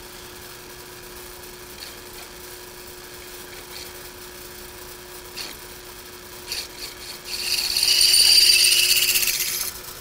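Drill press running with a steady hum. About seven seconds in, the twist drill bites into the sheet-metal box and cuts for a couple of seconds with a loud, high-pitched ringing, finishing the hole.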